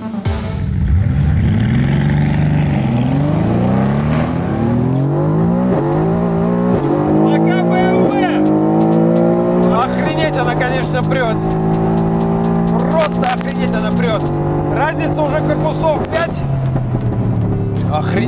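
Twin-turbocharged V8 at full throttle from a standing start, heard inside the cabin. The engine note climbs in pitch through each gear and drops at each of several quick upshifts, then holds steadier near the end.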